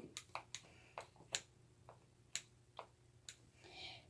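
Faint, irregular small clicks and taps of plastic slime containers and a soap bottle being handled, about a dozen in all, with a soft rustle near the end.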